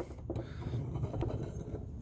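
Room tone: a low steady hum with a faint click or two and a light rustle.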